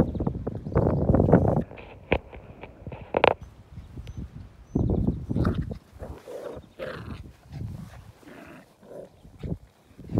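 Two seven-week-old border collie puppies play-fighting, with their puppy vocalisations coming in irregular bursts separated by quieter gaps.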